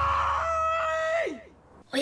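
A woman's long, sustained scream of shock, steady in pitch, stepping up to a higher note about half a second in and then sliding down and dying away a little after one second.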